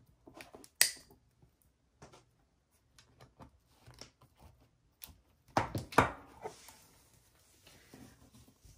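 Hands twisting a pipe cleaner around a wire wreath frame: scattered light clicks and rustles of burlap and wire. A louder burst of rustling and knocks comes about six seconds in as the wreath is handled.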